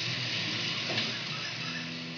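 Recorded music playing in the background: a few low notes held steadily under an even hiss.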